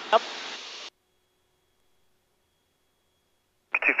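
Aircraft headset intercom feed: a short spoken reply over steady cabin hiss that cuts off abruptly about a second in as the intercom squelch closes. Then near silence with only a faint hum, until a narrow-sounding air traffic control radio voice comes in near the end.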